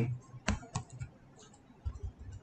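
A few separate keystrokes on a computer keyboard, slow and spaced out, with one more near the end.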